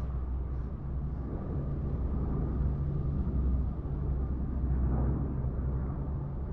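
Steady, deep rumble of a four-engine turboprop transport plane in flight, with rushing wind noise.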